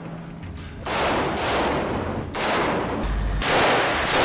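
Three loud bursts of gunfire about a second apart, each trailing off in an echo.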